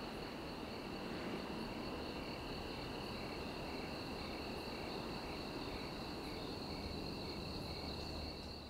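Crickets chirping in a night field: a steady high trill, with a fainter chirp repeating about twice a second, over a faint low background noise.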